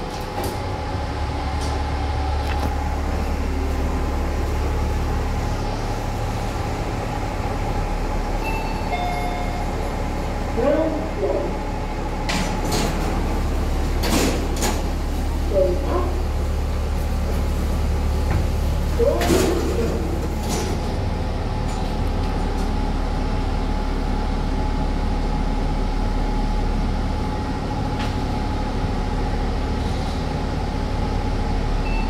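Shopping-mall ambience by a bank of lifts: a steady low hum with brief snatches of passing voices and a few sharp clicks in the middle stretch.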